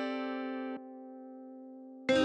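Hip-hop type-beat instrumental: a held chord drops sharply to a quieter sustained tone a little under a second in, with no drum hits.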